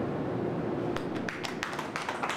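A steady low hum fades out in the first second. Then hand clapping starts, a few scattered claps becoming more frequent near the end.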